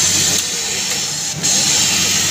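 Industrial multi-needle sewing machine running in short bursts: a high hissing whirr that stops about half a second in and starts again just before the end, over a steady low motor hum.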